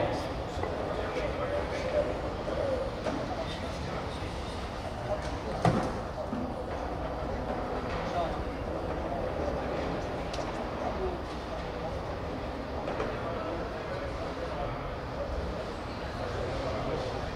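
Low, steady murmur of spectators' chatter in a bowling hall, with one sharp knock about six seconds in.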